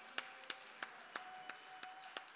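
Faint, sparse hand claps, evenly spaced at about three a second, over a faint steady held tone.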